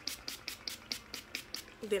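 Mario Badescu facial spray mist bottle pumped rapidly at the face: a quick run of short sprays, about six a second.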